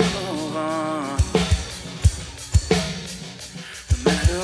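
Live rock band music: electric and acoustic guitars with a drum kit, sparse kick and snare hits about once a second, the sound thinning out and dropping quieter in the last second before a loud drum hit at the end.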